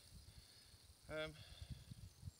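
Near silence: faint outdoor background with low rumbling flickers, and a brief spoken 'um' about a second in.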